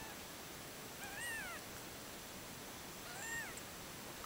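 Cat giving two short meows about two seconds apart, each rising then falling in pitch.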